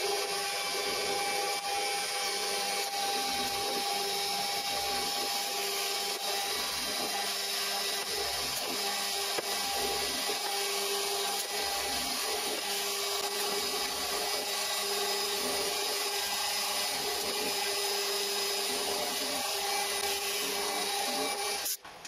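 Homemade milling machine running a 6 mm end mill through aluminium: a steady whine of the spindle with cutting noise over it.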